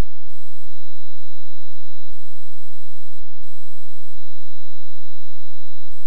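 Pause with no speech or music: only a steady low hum and faint hiss of the recording, with a thin, steady high-pitched whine.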